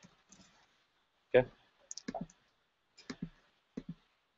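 A few sparse keystrokes on a computer keyboard, quick taps in small clusters, as a typo in typed notes is corrected.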